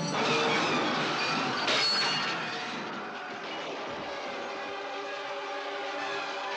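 Film-trailer battle sound effects over orchestral score: a dense rush of noise as a horse and rider go down in the dust, a sharp crash about two seconds in, then the music carries on with steady held notes.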